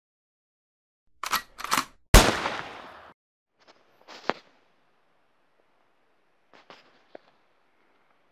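A shotgun shot: two short sharp cracks, then a single loud blast about two seconds in that dies away over about a second. A few faint clicks follow.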